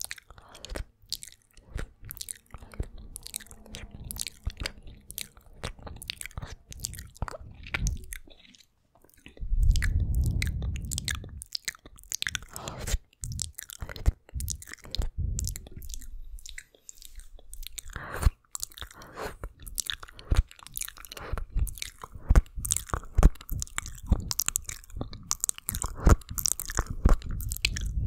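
Close-up wet mouth sounds and tongue licking on a Blue Yeti microphone: a dense, irregular run of wet clicks and smacks, with a louder, low rumbling stretch about ten seconds in.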